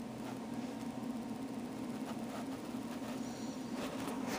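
A steady low hum under faint hiss.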